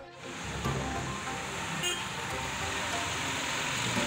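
Steady rushing background noise with faint music under it.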